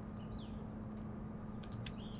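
A couple of small sharp clicks near the end as a hand tool is handled on an electrical cord, over a steady low hum. A faint bird chirp comes about a third of the way in.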